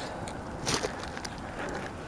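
Footsteps over rock and scrub, with a brief crackle of brushed undergrowth about two-thirds of a second in.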